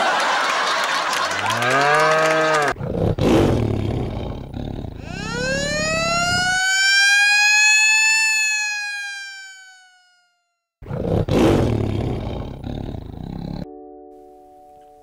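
Intro sound effects: noisy whooshes, then a long pitched sweep that rises and slowly falls over about five seconds before fading out. After a brief silence, another noisy whoosh follows.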